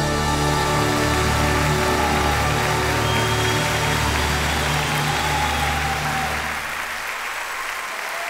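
The closing chord of a live song played by a symphony orchestra with drum kit, held and then fading out, while a large concert audience's applause swells up under it.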